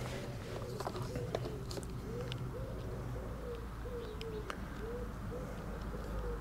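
A pigeon cooing over and over, a run of short low coos about two a second. Faint clicks come from plastic wiring connector parts being handled.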